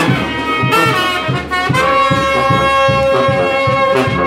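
A brass band with a sousaphone playing live. A pumping bass line runs under higher horns, which hold one long note from about halfway through.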